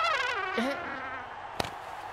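A comic sound effect: a whistle-like tone sliding down in pitch with a wobble, fading out about half a second in. A short sharp click comes about a second and a half in.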